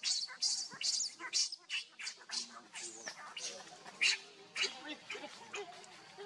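Baby macaque screaming in distress: a rapid series of short, high-pitched shrieks, several a second, that thin out after about four seconds.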